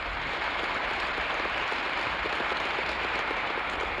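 A large audience applauding steadily, heard on an old archival film soundtrack.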